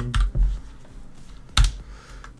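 Computer keyboard and mouse clicks: a few quick key presses in the first half second, then one louder, sharp click about a second and a half in.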